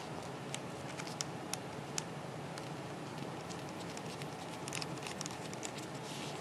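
Light clicks and handling noise as the full-length antenna is screwed onto the SMA connector of a Yaesu VX-8DR handheld transceiver: a few in the first two seconds, a cluster about five seconds in, over steady hiss.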